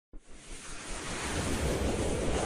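A rushing, wind-like whoosh sound effect for an animated logo intro. It starts abruptly and swells steadily in loudness over a deep low rumble.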